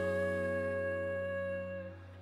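Live band's closing chord: a female singer holds one long final note over sustained acoustic guitar and band, and the music fades out near the end.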